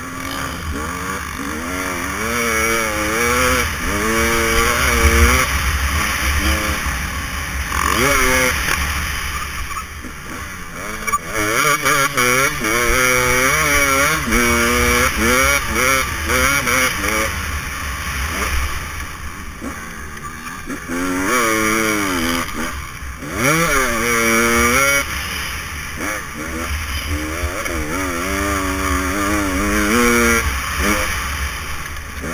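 Dirt bike engine ridden hard round a motocross track, heard close up from on board: the revs climb and drop again and again as the rider works the throttle and gears, with brief lulls when the throttle is shut. Wind rush on the microphone underneath.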